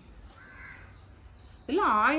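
A faint, distant bird call about half a second in, over low background; near the end a woman starts speaking.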